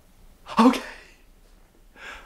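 A man's single short, excited vocal outburst, a gasp-like yelp, about half a second in.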